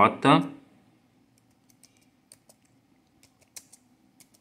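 Laptop keyboard being typed on: a handful of faint, unevenly spaced key clicks, with one louder click near the end.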